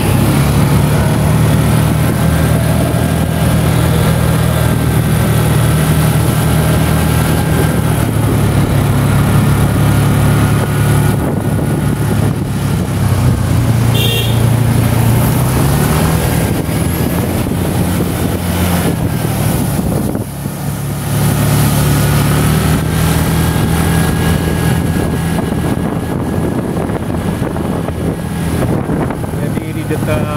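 Motorcycle engine running while being ridden, heard from the rider's seat, its pitch shifting up and down with the throttle and dipping briefly about twenty seconds in.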